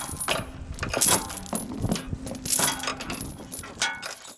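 Irregular sharp metallic clinking and rattling, with a faint steady low hum underneath.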